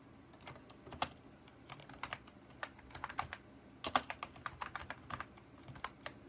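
Typing on a computer keyboard: irregular key clicks, with a quick flurry about four seconds in.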